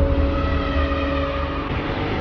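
Cinematic intro sound design: a loud, deep rumble under a few held, steady drone tones.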